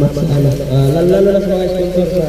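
A man's low voice chanting in long held notes that slide between pitches, rising to a higher held note about a second in.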